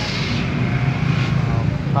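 Steady low engine rumble of nearby motor traffic, with a rushing hiss over it for the first second or so.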